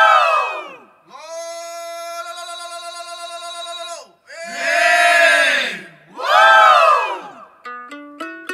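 A chorus of voices giving long cries that rise and fall in pitch, three times, with a steady held tone between the first and second. Near the end a plucked string instrument starts a quick run of notes.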